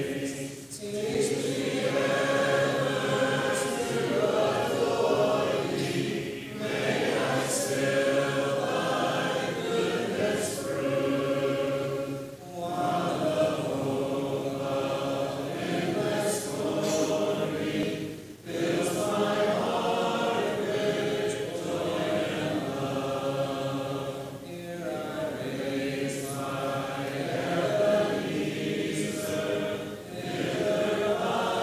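A congregation singing a hymn a cappella, many voices with no instruments, with brief pauses between phrases about every six seconds.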